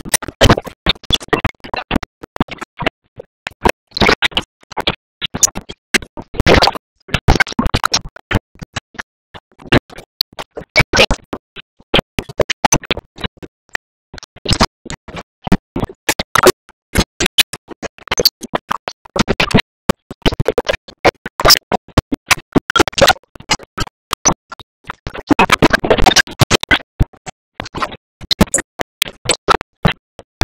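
Scratchy, broken-up soundtrack: dense crackling and clicking that cuts in and out many times a second, with no clear words.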